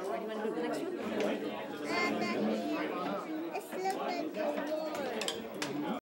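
Indistinct chatter of many voices talking at once, with no single speaker standing out, and a few light clicks.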